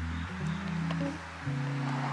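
Background music with a plucked guitar over held low notes that change chord about a third of a second in and again about a second and a half in.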